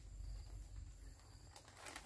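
Quiet outdoor background: a low rumble under faint, steady high-pitched tones, with a soft tap about one and a half seconds in.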